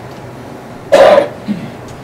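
A person coughing: one loud, sharp cough about a second in, followed by a shorter, weaker one.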